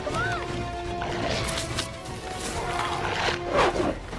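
Orchestral film score with held tones, under animal cries and snarls from a hyena fight. Several of the cries rise and fall in pitch, one in the first half second and more in the last second and a half.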